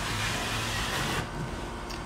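Metal drywall taping knife scraping along a freshly taped sheetrock joint, squeezing out wet joint compound from under the paper tape. The scrape stops a little over a second in.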